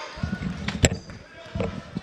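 Basketball being dribbled on a hardwood gym floor: a few low bounces, with one sharp knock a little under a second in, the loudest sound.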